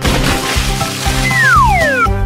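Cartoon sound effects over upbeat children's background music: a splash of liquid right at the start, then a falling whistle glide a little over a second in.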